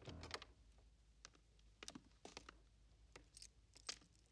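Faint, scattered clicks and taps of an apartment door being unlocked and opened, with footsteps on a hard floor, in a small room.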